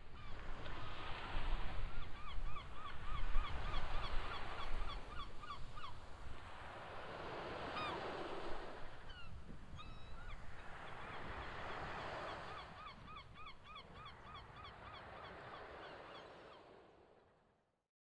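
Surf washing in slow swells every few seconds, with birds giving runs of short, rapidly repeated calls over it; the sound fades out near the end.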